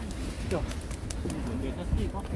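Outdoor market background of faint distant voices, with a bird cooing.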